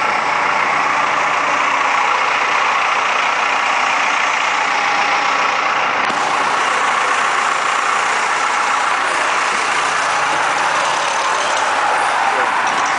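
Excavator diesel engine running steadily, heard close from the cab.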